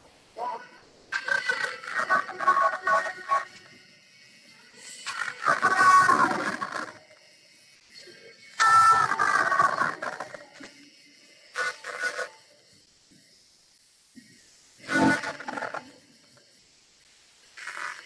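A guided yoga nidra relaxation recording: a calm voice speaking slowly in short phrases separated by long pauses, over faint background music.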